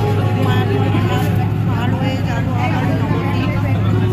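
Engine of a river ferry boat running with a steady low drone, with voices talking over it.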